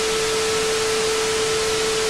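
Television static sound effect: a steady, even hiss with a single steady tone held underneath it.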